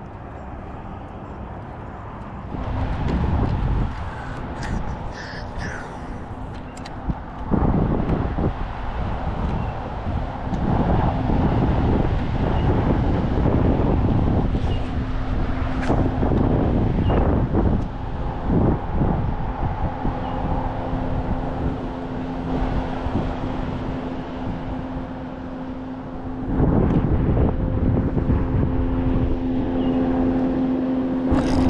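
Electric trolling motor on a bass boat humming steadily, fading out and coming back louder in the second half, over the low rumble of wind on the microphone.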